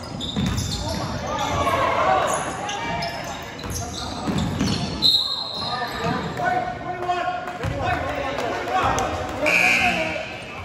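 Basketball dribbled on a hardwood gym floor amid players' and spectators' voices, all echoing in a large hall, with a few brief high squeaks.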